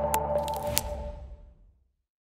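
Tail of a channel's logo jingle: electronic sound effects with two light clicks over ringing tones that fade out to silence about one and a half seconds in.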